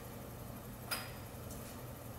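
A single light click of an item being set down on the kitchen counter about a second in, with a brief high ring, over a faint steady low hum.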